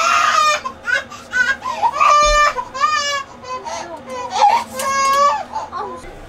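A baby crying and fussing in a series of high, wavering cries, with a short low thud a little over two seconds in.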